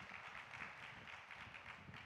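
Near silence: faint room noise with light scattered ticks, in a pause between spoken phrases.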